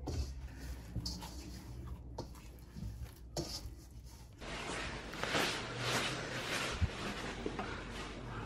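Hands kneading dumpling dough in a stainless steel bowl: quiet squishing and rubbing of dough against the metal, with a few light knocks early on and a louder, irregular stretch of kneading in the second half.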